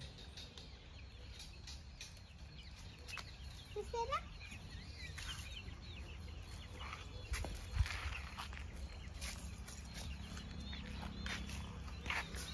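Faint clucking from backyard chickens in a wire cage, with scattered soft clicks and a short rising call about four seconds in, over a low steady rumble.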